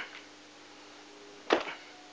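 Lashes of a whipping: a sharp swishing strike about one and a half seconds in, with the tail of the previous lash at the very start, in a slow, regular rhythm.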